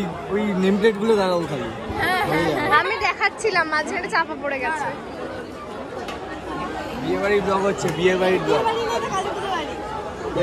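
Several people talking over one another in a crowd: close voices with chatter behind them.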